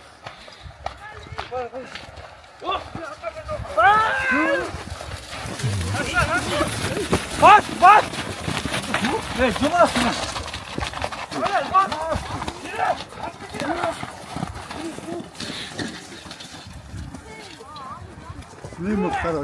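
Men calling out and shouting over a close pack of horses, in short rising-and-falling yells that are loudest through the middle. Beneath them run the thuds and scuffs of horses' hooves on snowy, muddy ground.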